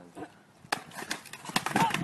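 A skateboard knocks sharply on concrete about two-thirds of a second in, followed by a few more short clattering knocks, then voices rise into yelling and laughter near the end.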